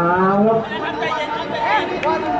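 Speech: a man's commentary voice at the start, then background chatter of several voices with a short call near the end.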